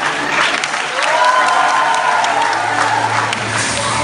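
Audience applauding and cheering over background music.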